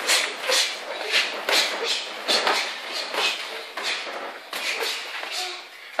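Boxing gloves landing and feet shuffling on the ring canvas during sparring: a steady run of soft thuds and scuffs, about two or three a second.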